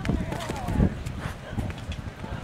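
Horse's hooves on grass turf as it lands over a show jump, with a heavy thud a little under a second in, followed by cantering strides.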